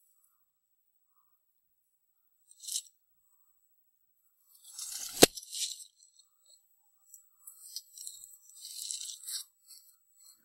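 Scattered crunching and scraping as kitchen scraps are shaken out of a stainless steel pot onto the wood-chip litter of a chicken run, with one sharp knock about five seconds in.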